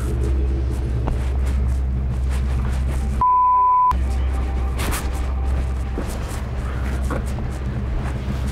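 A censor bleep: a single steady beep tone of under a second, about three seconds in, during which all other sound is cut out. Around it, a low steady rumble with a few faint clicks.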